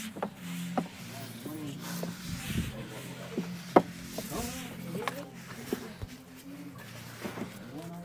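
EV charging cable being handled and wound up at the wall-mounted charger: soft rubbing with several light knocks, the sharpest about four seconds in. Faint voices and a low steady hum run underneath.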